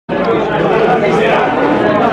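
Indistinct chatter: several people talking at once, with no single voice standing out.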